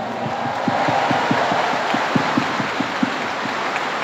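Large audience applauding steadily, a dense wash of many hands clapping.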